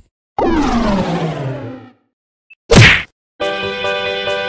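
Edited-in transition sound effects. A pitched sweep falls in pitch for about a second and a half, then a short, loud hit comes near the three-second mark. Intro music with a plucked melody starts just after.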